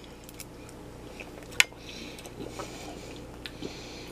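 Soft chewing and mouth sounds of someone eating braunschweiger, with a few small clicks and one sharp click about one and a half seconds in, over a faint steady hum.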